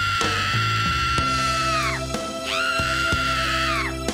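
A woman screaming as if in labor: two long, shrill, steady screams, the first ending about halfway and the second starting half a second later and stopping just before the end, over upbeat background music.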